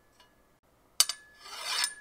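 Perforated steel strips knocked together once about a second in, leaving a thin ring, then scraped together in a rasp that swells and stops near the end: metal pieces used to record a home-made sword-clash sound effect.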